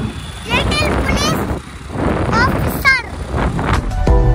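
Motor scooter running on the move, with wind rumble on the microphone; a child's high voice calls out several times over it.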